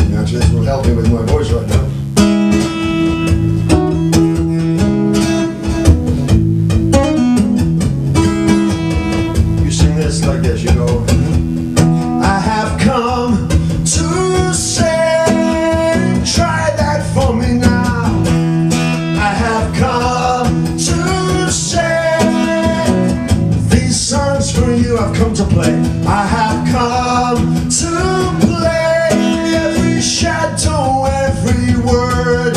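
A man singing to his own strummed acoustic guitar, in a live solo folk performance.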